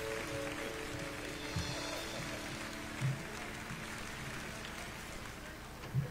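Soft background music of sustained held chords, which thin out about two seconds in, over a steady hiss of room noise with a few brief low thumps.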